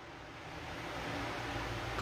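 Low, steady room tone: a faint hiss with a low hum underneath, in a pause between spoken sentences.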